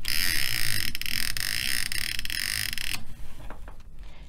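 Seat-belt webbing being fed back into a switchable retractor set to automatic locking mode: a steady hiss of sliding webbing with many quick ratcheting clicks for about three seconds, stopping suddenly as the belt winds fully in. Winding the webbing all the way in resets the retractor to emergency locking mode.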